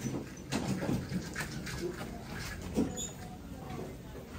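Indistinct, far-off voices of people and children, short fragments of chatter, over a steady low hum.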